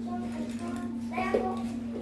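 Children talking quietly in a small, echoey room, over a steady hum.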